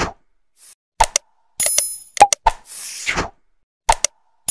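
Like-and-subscribe outro sound effects: a bright bell ding, a few quick clicks and a pop, then a falling whoosh, the sequence repeating about every three seconds.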